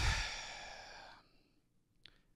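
A man sighs into a close microphone: a single breathy exhale of about a second that starts sharply and fades out.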